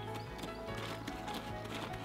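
Quiet background music with sustained held notes, with a few faint, irregular taps or clicks under it.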